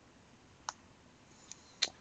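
Three short computer mouse clicks, the middle one faint and the last two close together.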